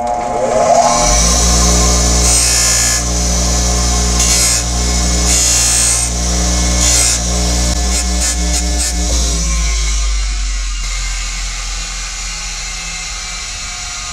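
Bench grinder with a firm abrasive deburring wheel switched on, its motor whining up to speed and then running with a steady hum. There are repeated spells of grinding noise as a metal part is pressed against the wheel to take off its burrs.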